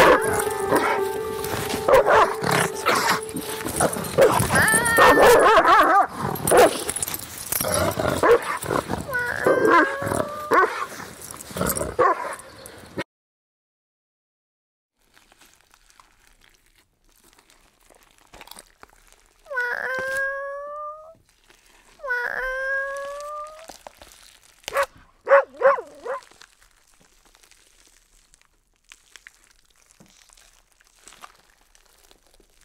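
A dog barking and yelping in a dense, loud run for the first dozen seconds, with a steady tone under the start. After a pause come two drawn-out howls, each rising slightly in pitch and a couple of seconds apart, then a few short yips.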